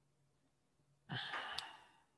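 Near silence, then about a second in, a man's short audible breath, like a soft sigh, lasting under a second.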